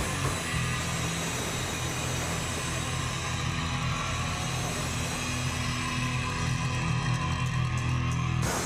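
A live punk rock band playing loud, heavily distorted electric guitars in a dense, sustained wash of sound.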